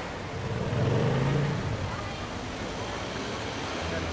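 City street traffic: a motor vehicle passes, loudest about a second in, over a steady background of road noise, with voices mixed in.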